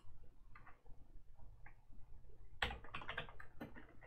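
Typing on a computer keyboard: a few faint keystrokes, then a quick run of louder keystrokes about two and a half seconds in.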